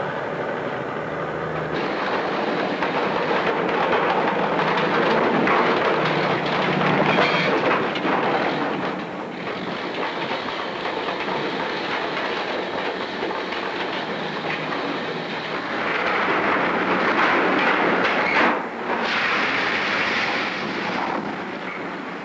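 Steady, loud rattling and rumbling of coal-handling machinery: a loaded dump truck, a clamshell grab bucket unloading barges, and conveyors moving coal. The noise shifts in character every few seconds and dips briefly near the end.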